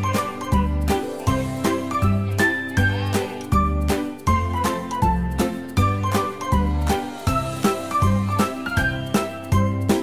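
Upbeat music with a steady beat and a tinkling, bell-like melody.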